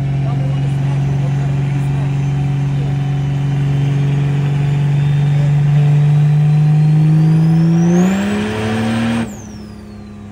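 12-valve Cummins diesel in a Dodge Ram making a full-throttle pull on nitrous, heard from inside the cab: the engine note climbs steadily with revs while a turbo whine rises to a very high pitch. About nine seconds in, the throttle is lifted and the engine drops off sharply, with the turbo whine falling away.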